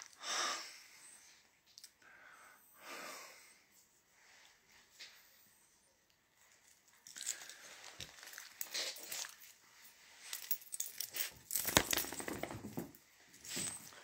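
Irregular rustling and brushing of clothing and a small dog's harness and fur being handled close to the microphone, sparse at first and busier in the second half.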